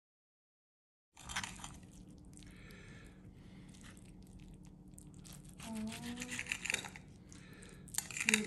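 Fork and spoon scraping and tapping on a ceramic plate as they cut into a baked stuffed bell pepper, a series of short scrapes and clicks over a steady low hum. The sound begins about a second in, after silence.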